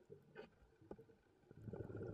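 Underwater, near-quiet at first with a single faint click, then a scuba diver's exhaled bubbles from the regulator start about a second and a half in and carry on as an irregular bubbling.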